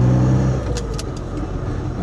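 Lotus Elan's twin-cam four-cylinder engine heard from inside the small coupe's cabin, running with a steady note that falls away about half a second in, followed by a couple of light clicks.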